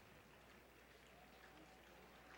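Near silence: faint background hiss in a pause between the preacher's sentences.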